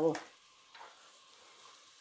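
Diced onion sizzling faintly in heating olive oil in a pot: the start of a sofrito.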